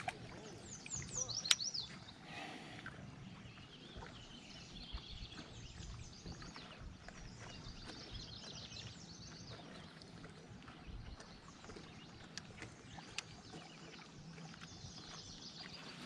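Faint birdsong, many short chirping calls, over low steady outdoor background noise, with one sharp click about a second and a half in.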